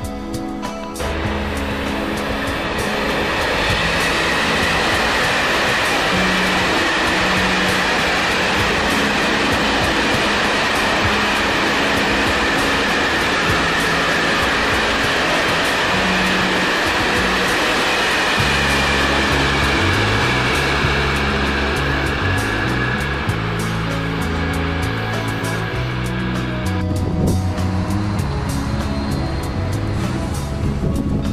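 Music with a stepping bass line, over a loud steady rushing noise that sets in about a second in and thins out near the end.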